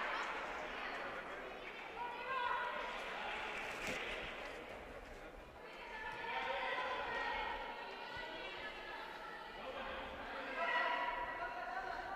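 Faint voices of futsal players calling out, echoing in a large indoor sports hall, with a single thud of the ball about four seconds in.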